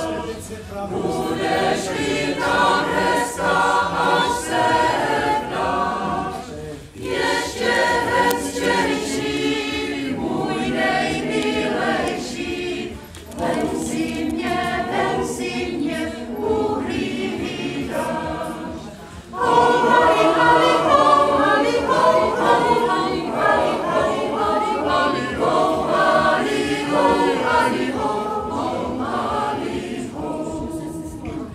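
Mixed choir of women's and men's voices singing a Czech song in several phrases, with brief breaks between them and a louder passage in the last third.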